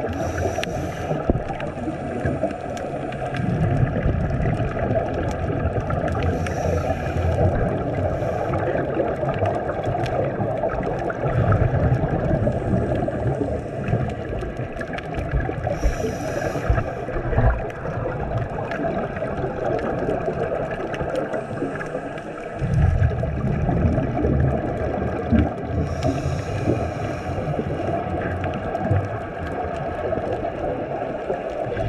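Scuba diver breathing through a regulator underwater: a short hiss on each inhale, about every nine or ten seconds, alternating with low rumbling bursts of exhaled bubbles, over a steady underwater hiss.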